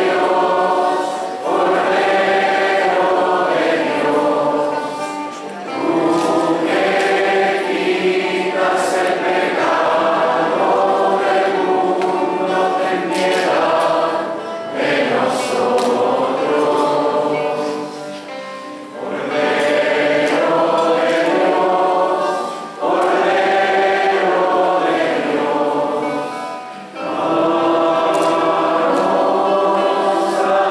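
A choir singing a church hymn in long phrases, with short breaks between phrases.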